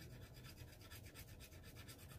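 Faint, rapid scratching of a scratch-off card's silver coating.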